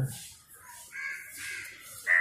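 A crow cawing, a harsh call starting about a second in.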